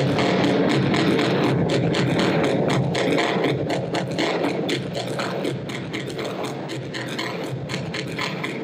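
Experimental electronic noise music: a dense, crackling texture of rapid clicks over a low rumbling drone, easing slightly in loudness about halfway through.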